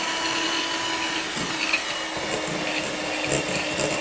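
Electric hand mixer running at a steady speed, its twin beaters working milk into crumbly butter-and-sugar cookie dough in a glass bowl.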